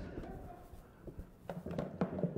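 A few faint clicks and taps as a small cardboard gift box is picked up and shaken, in the second half.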